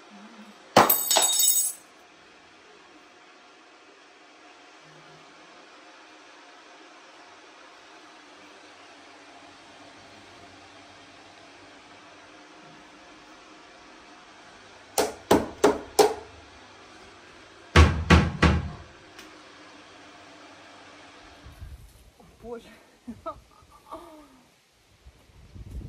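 A loud clattering burst about a second in, then after a long lull four quick sharp knocks, followed a couple of seconds later by a heavier thump with a short rattle. A faint steady hum runs underneath.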